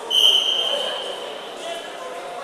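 A referee's whistle blown in one long blast of about a second and a half, loudest at the start and fading away, over crowd murmur in a large hall.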